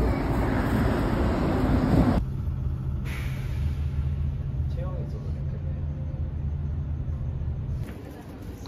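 Steady low rumble of a city bus, heard from inside the cabin while riding, starting suddenly about two seconds in and stopping just before the end. Before it, a short stretch of louder, noisier outdoor sound.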